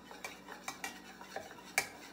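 Metal spoon stirring liquid in a measuring cup, clinking irregularly against the cup's sides, with one louder clink near the end.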